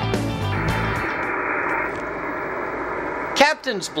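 Intro theme music that ends about half a second in, followed by a steady hiss for a second or so. A man starts talking near the end.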